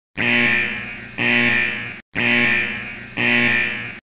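Electronic alert tone sounding four times in two pairs, each note lasting about a second and fading away.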